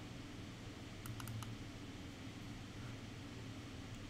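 Steady low room hum with a quick run of three or four computer mouse clicks about a second in.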